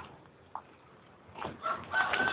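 A rooster crowing: one long, steady, high call that begins near the end, after a quieter stretch with a small click.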